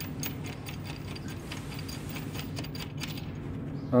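Light, irregular metallic clicks and ticks of a 16 mm bolt and washer being turned in by hand into a metal mounting bracket, thinning out near the end, over a steady low hum.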